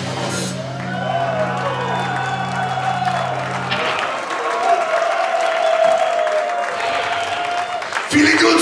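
A metal band playing live through a PA: a low held note that cuts off about four seconds in, then a long sustained higher note that wavers slightly in pitch.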